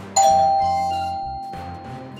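A single bright chime struck just after the start and ringing down slowly, a game-show sound effect marking a correct answer, over background music.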